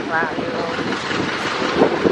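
Steady rush of wind on the microphone with road and engine noise from riding a motorbike through a street.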